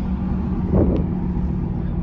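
Steady low road rumble inside a moving vehicle's cabin: engine and tyres running on a wet highway, with a constant low hum.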